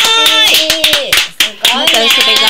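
Two women clapping quickly, with excited, high-pitched wordless exclamations from women's voices over the claps.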